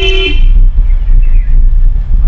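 A car horn sounds one short, steady beep at the start, followed by the steady low rumble of the moving car heard from inside the cabin.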